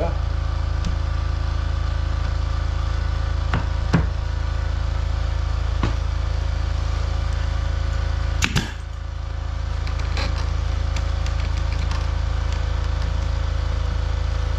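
Pneumatic brad nailer firing into wooden window trim: a handful of sharp shots a few seconds apart, the loudest about four seconds in and a quick double shot past halfway. Under them, a steady low hum of the air compressor running.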